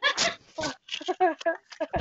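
Women laughing in short, choppy bursts.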